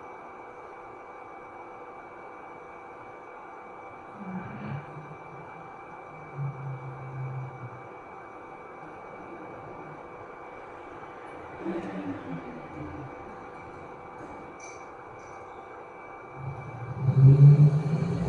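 Live ambient stage accompaniment: a steady low drone with a few deep held notes, swelling much louder near the end.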